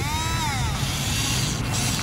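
Remote-control toy bulldozer's electric drive whining, its pitch falling over the first second, then settling to a softer steady whir as its blade scrapes through dirt.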